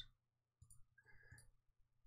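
Near silence: room tone, with a few faint clicks in the middle.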